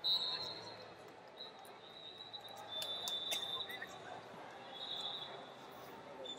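Ambience of a busy wrestling arena: background chatter, scattered knocks and thuds, and a high steady tone that comes and goes several times.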